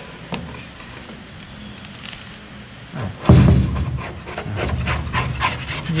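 Metal scraper dragging blistered, stripper-softened paint off a steel car door in short repeated strokes, faint at first and turning loud about three seconds in.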